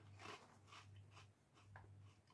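Faint, soft crunches of a Crunchy Cheeto being chewed with the mouth closed, a handful spread through the two seconds, over a steady low hum.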